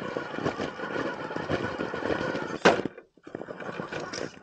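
Axial SCX10 PRO RC rock crawler's electric motor and geared drivetrain whining under load as it crawls over rocks, with its tires and chassis clicking and scraping on the stone. A single sharp, loud clack comes about two-thirds of the way in, followed by a brief gap.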